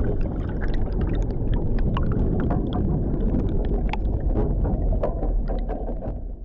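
Underwater sound effect closing the track: a dense, muffled low rumble with many small scattered bubble pops above it, beginning to fade near the end.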